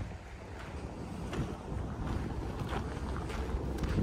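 Wind buffeting the microphone outdoors, a fairly quiet, uneven low noise.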